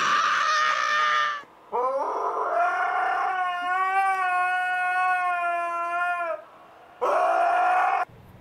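A dog howling: one long, steady howl lasting several seconds, then a second howl starting near the end. A short high squeal comes first, at the very start.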